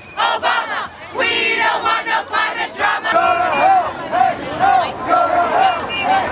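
A crowd of marchers chanting and shouting together. From about three seconds in, the chant falls into an even rhythm of repeated syllables.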